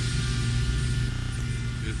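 A steady low hum with no change through the pause in speech, as from running machinery or electrical equipment.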